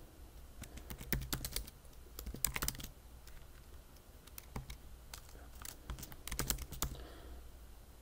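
Typing on a computer keyboard: runs of quick key clicks with a quieter pause in the middle.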